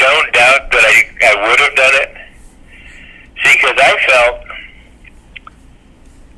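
Speech only: a man talking in two short stretches with pauses between, the voice thin as if heard over a telephone line.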